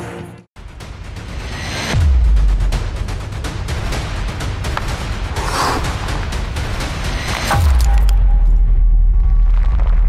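Cinematic promo sound design: a deep bass boom with a falling sweep about two seconds in, a whoosh near the middle, and a second boom about seven and a half seconds in that holds a long low rumble.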